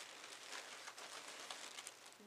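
Faint rustling of plastic packaging and craft supplies being handled on a table, with a few light ticks.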